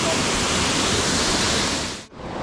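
Waterfall rushing: a steady, even noise of falling water that fades out right at the end.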